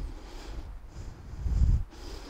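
Low rumble of moving air buffeting a close headset microphone, swelling to its loudest shortly before the end and then falling away.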